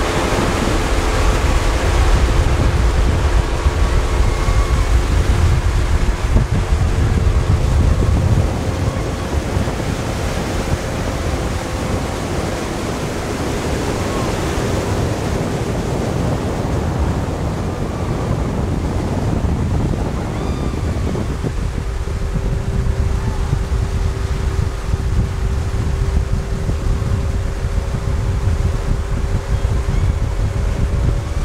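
Wind buffeting the microphone over the rush of water and the steady drone of a motorboat engine. The wind is strongest in the first quarter or so, and the engine note changes about two-thirds of the way through.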